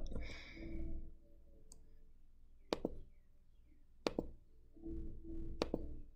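Three sharp computer mouse clicks about a second and a half apart, turning the pages of an on-screen book, with a faint low hum in between.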